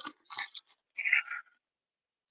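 Two brief, faint crinkles of a small paper sachet being lifted out of a box packed with shredded paper.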